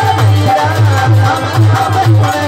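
Live bhajan: a harmonium plays a melody with held reed tones, and a dholak beats a steady rhythm about three strokes a second. A man's singing voice joins over them.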